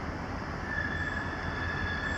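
Approaching diesel freight train: a steady low rumble, joined under a second in by a single high-pitched squeal that holds steady, the wheel flanges squealing as the train takes the curve.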